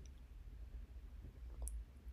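A few faint computer keyboard clicks over a low, steady hum.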